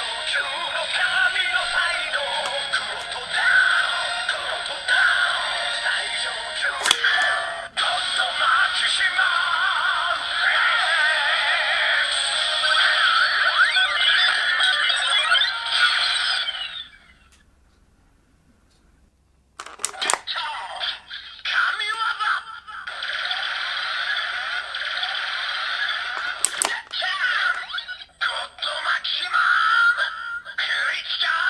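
Kamen Rider Ex-Aid DX Gamer Driver toy belt, with a God Maximum Mighty X Gashat inserted, playing its electronic transformation music and voice calls through its small built-in speaker. The sound is thin and tinny, with no bass. It stops for about three seconds past the middle, then starts again.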